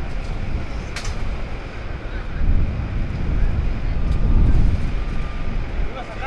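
A steady low outdoor rumble that swells in the middle, with one sharp clank about a second in as workers handle temporary chain-link fence panels.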